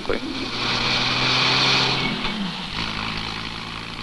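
A car driving past: engine hum and tyre hiss swell to a peak about halfway through, then fade as the engine's tone drops while it goes by.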